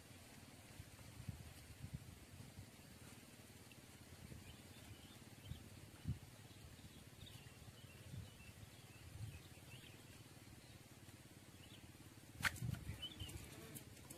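Quiet riverside outdoor ambience with faint, scattered bird chirps and soft low thumps. Near the end comes one sharp click followed by a brief cluster of soft thumps.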